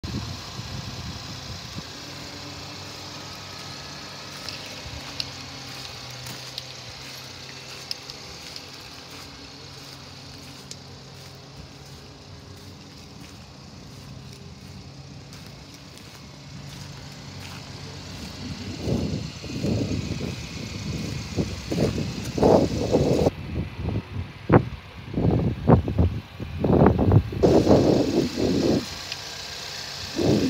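The 2.3-litre EcoBoost four-cylinder engine of a 2020 Ford Explorer XLT idling steadily with the hood open. From about two-thirds of the way in, loud irregular rumbling bursts cover the idle.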